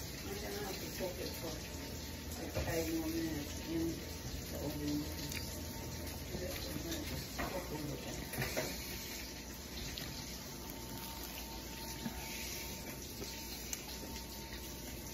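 A person chewing a mouthful of toasted English-muffin sandwich close to the microphone: faint, irregular wet mouth sounds and small clicks, with a few short soft hums a few seconds in.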